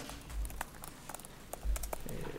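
A pause in a speech: quiet room tone with scattered faint sharp clicks and two soft low thumps, one about half a second in and one near the end.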